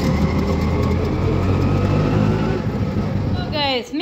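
Auto-rickshaw engine running steadily as the vehicle moves, heard from inside the cabin as a loud, low drone. Near the end it cuts off and a woman's voice begins.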